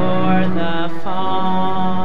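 Devotional song accompanying a Bharatanatyam dance drama: a long sung note held over a steady drone, with a new note sliding in about a second in.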